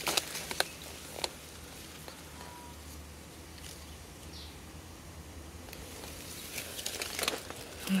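Citrus leaves rustling, with a few light clicks and snaps, as a hand reaches into a kumquat tree's branches, over a steady low background hum.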